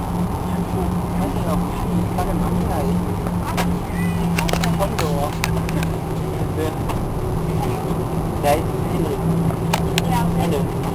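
Steady cabin noise of an Airbus A340-300 taxiing: a constant low drone with a steady hum, and a few light clicks here and there.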